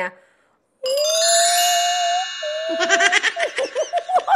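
A short silence, then a single bright musical note held for about two seconds, a reveal sound effect. After it comes a woman's voice laughing and talking.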